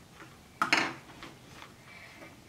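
A plastic Play-Doh tub set down on a wooden tabletop: one sharp clack a little over half a second in, with faint handling clicks around it.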